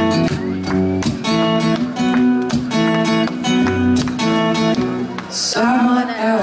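Acoustic guitar strummed live in a steady rhythm of repeated chords, with a short burst of crowd noise near the end.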